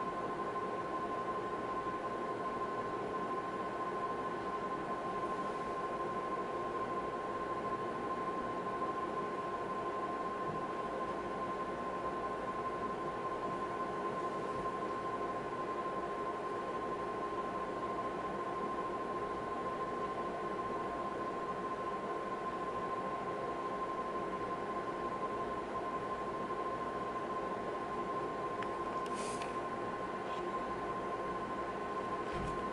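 Ultrasound machine running with a steady electronic whine: a constant high tone over a low hum and hiss. A brief click near the end.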